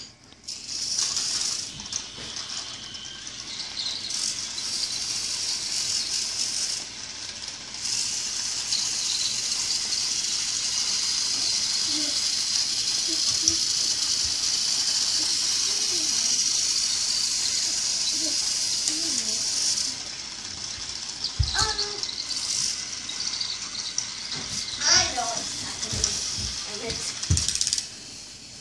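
A battery-powered Thomas the Tank Engine toy train's small motor and gears running with a steady high whirring rattle as it drives itself around a plastic track. The rattle dips briefly a few times and stops about twenty seconds in. A few sharp knocks follow as the toy is handled.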